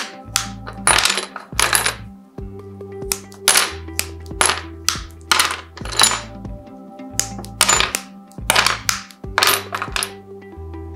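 Sharp clinks of glass smalt being snapped with mosaic nippers and the cut pieces dropping onto a pile of tiles, about one a second. Background music runs underneath.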